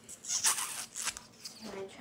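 A soft plastic drink pouch being squeezed and sucked from at the mouth, making a few short crinkly, rustling bursts.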